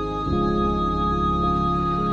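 Background music of sustained keyboard chords, changing chord about a third of a second in.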